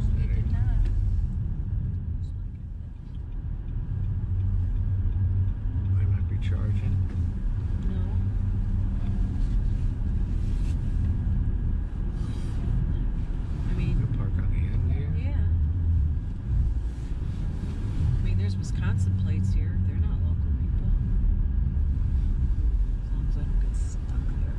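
Steady low rumble of a car's engine and tyres heard from inside the cabin while it drives slowly on snowy streets, with faint voices at times.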